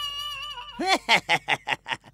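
A cartoon character's voice: a held note, then a quick run of about six 'ha-ha' syllables in a second, a ghost's gloating laugh.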